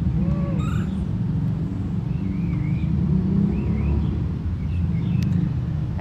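A steady low rumble, with faint short bird chirps scattered through it.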